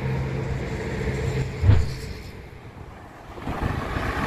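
Road traffic: a steady vehicle hum with a sudden thump about halfway through. Then it goes quieter before the rushing tyre noise of an approaching car builds near the end.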